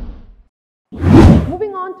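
Whoosh sound effects of an animated logo transition. A deep swoosh fades out in the first half second, and a second, brighter swoosh comes about a second in, just before a woman starts speaking.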